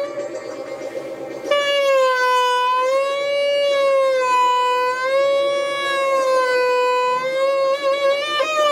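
Alto saxophone holding one long, high note that wavers slowly up and down in pitch, swelling louder about a second and a half in.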